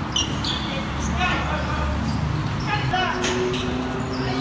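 Basketball bouncing on a hard outdoor court during a pickup game, with players' voices calling out over the play.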